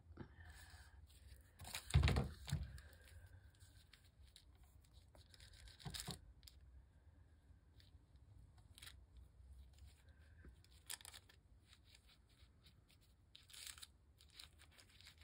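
Crackly paper and tissue paper being handled on a craft table: scattered soft rustles and crinkles, with a louder rustle and knock about two seconds in.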